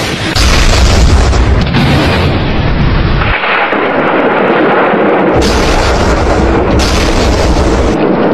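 Loud explosion-like booming sound effects with heavy deep bass that fill the whole stretch. The deep bass drops out for about two seconds midway, then comes back.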